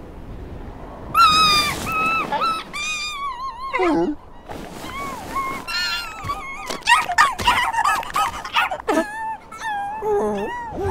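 Voice-acted cartoon seal vocalizations: several high, wavering squeals and whimpers overlap, starting about a second in. One cry slides down in pitch near the middle and another near the end.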